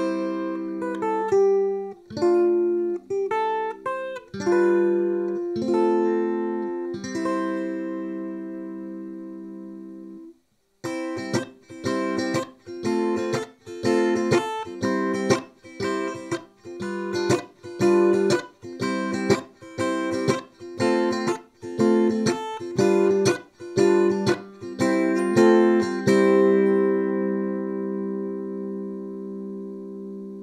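Fanner Exosphere electric ukulele played clean through a Hughes & Kettner Spirit of Vintage nano amp head and a Barefaced bass cab. For about ten seconds a few chords are struck and left to ring, then there is a brief break. Rhythmic strummed chords follow, ending on a final chord that rings out and fades.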